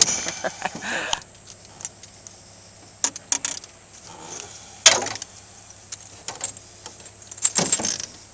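Metal clinking and rattling of a fishing lure and its hooks as it is worked out of a small northern pike's mouth over a landing net. The sounds come as scattered sharp clicks, the loudest about five seconds in and a quick cluster near the end.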